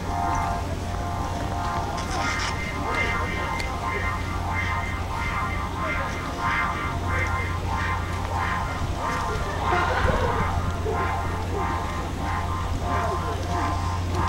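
Steady drone of an electric blower fan keeping a large inflatable sculpture inflated, with music and a regular pulse over it.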